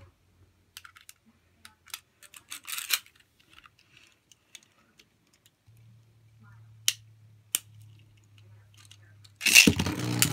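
Small plastic clicks and rattles of Beyblade tops and launchers being handled and fitted together. A faint low hum runs for a few seconds in the middle. Near the end a loud burst as a Beyblade top is launched into the plastic stadium.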